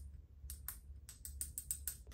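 Paper fortune slip being unwrapped and unfolded by hand: a quick run of about ten crisp crinkles and clicks, starting about half a second in.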